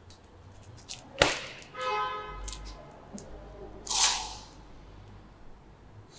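Handling noises from a gym machine: a sharp snap about a second in, a short ringing tone, then a loud swish a little before the four-second mark.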